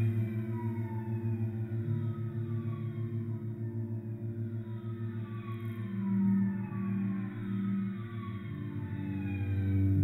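Slow ambient cello music: low held notes with a slight pulsing, under high tones that slide downward again and again. In the second half three short notes sound one after another, and the music swells louder near the end.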